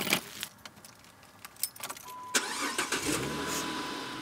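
Keys jingling and clicking in a car's ignition, then the engine cranks and starts about two seconds in and settles into a steady idle.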